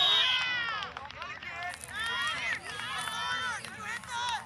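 A referee's whistle blast cuts off just after the start, then players and spectators shouting and calling out across the field, several voices at once.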